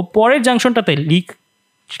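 A person's voice speaking in a lecture for about the first second, then it cuts to dead silence for about half a second near the end.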